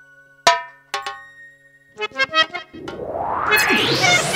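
Electronic keyboard sound-effect music: two sharp chord stabs about half a second apart, a quick run of notes, then a whooshing sweep that rises steadily in pitch through the last second and a half.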